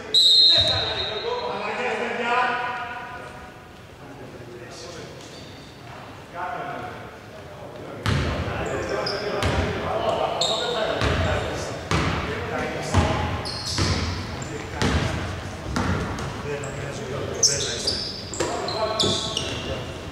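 A basketball being dribbled and bounced on a hardwood court in a large, nearly empty hall, the bounces echoing; the bounces come thick from about eight seconds in, and players' voices call out, most clearly early on.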